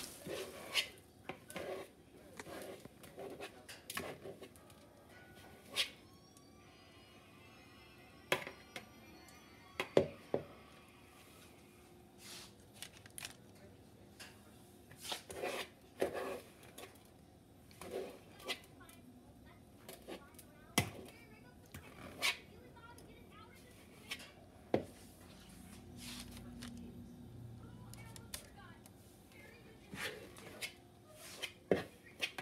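A metal cookie scoop clicking and knocking against a plastic mixing bowl and a metal baking sheet as cookie dough is scooped out, in scattered irregular taps, the loudest about ten seconds in.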